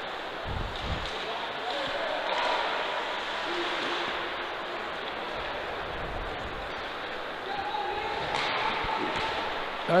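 Ice hockey rink game sound: a steady hiss of skates on the ice, with occasional sharp clicks of sticks and puck, and faint distant shouts.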